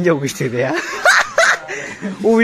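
Young men laughing and snickering, in short voiced bursts broken by breathy, high-pitched snickers near the middle.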